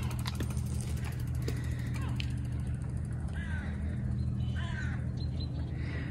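A few short bird calls, about two, three and five seconds in, over a steady low hum.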